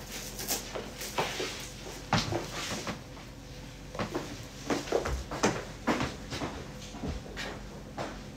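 Handling noise from a handbag being picked up and slung over the shoulder: scattered light clicks, taps and rustles at irregular intervals.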